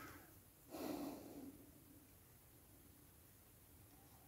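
Near silence with one faint breath out through the nose about a second in.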